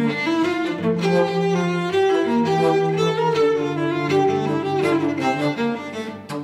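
Cello and bass flute duet in slow, sustained notes: the cello holds a low line while a higher line moves above it, the notes changing about once a second.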